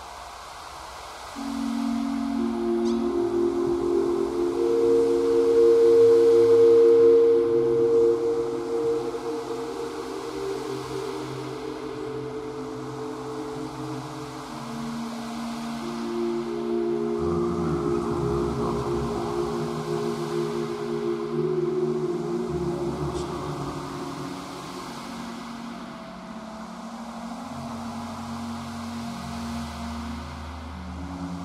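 Ambient electronic music: long held synthesizer chords over a soft noisy texture, with no beat. The chords enter about a second and a half in and shift to new notes about halfway through.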